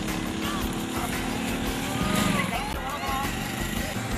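A motorcycle engine running steadily, with people's voices talking over it.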